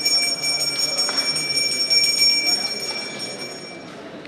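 Brass puja hand bell rung steadily during worship, its ringing stopping shortly before the end, with faint voices behind.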